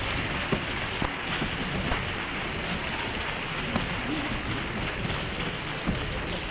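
Theatre audience applauding, a steady dense clatter of many hands.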